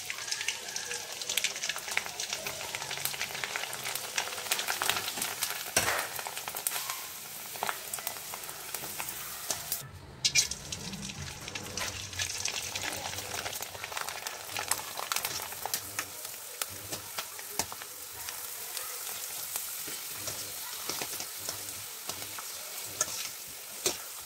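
Rice fryums (kaddi sandige) sizzling in hot oil in a steel kadai, a dense steady crackle of small pops as they fry crisp, with a brief break about ten seconds in.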